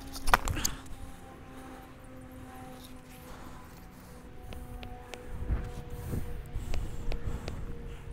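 Tennis serve: a sharp crack of the racket striking the ball about a third of a second in, followed quickly by a second knock of the ball landing. A few lighter knocks follow in the second half as balls are handled and bounced before the next serve.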